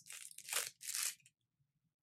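Thin plastic wrap being torn and crinkled off a makeup brush: three short rustles in the first second or so, then the sound cuts off abruptly.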